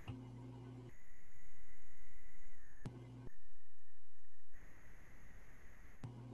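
Steady low electrical hum and background noise on an online video-call line, with no voices. It switches abruptly between quieter and louder stretches a couple of times.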